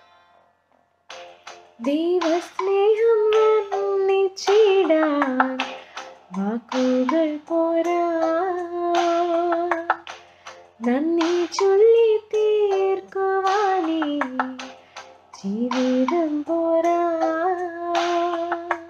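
A woman singing a slow special song solo, starting about a second in. She sings in phrases of about four seconds with long held notes and short breaths between.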